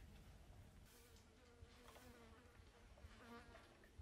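Near silence with a faint buzz of a flying insect, wavering in pitch, from about a second in to near the end.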